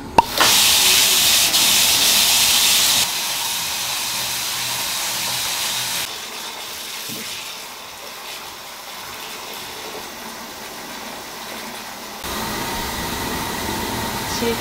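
Tap water pouring from a wall-mounted spout into a freestanding bathtub as it fills: a steady rushing hiss with a click just after the start, dropping abruptly in level twice. Near the end it gives way to a steadier noise with a faint hum.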